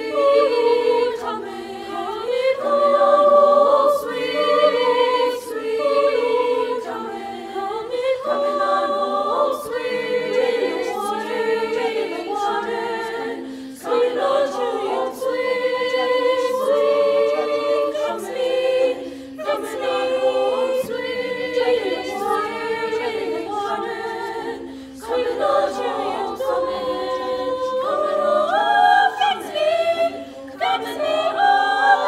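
A choir of young women singing a cappella in several parts, in phrases broken by short pauses.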